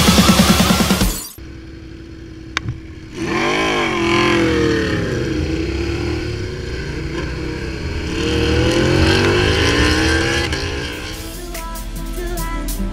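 Motorcycle engine heard from an onboard camera over wind rush, its revs rising and falling several times as it accelerates and backs off. Beat-driven electronic music is loudest at the very start and cuts off about a second in; music comes back near the end.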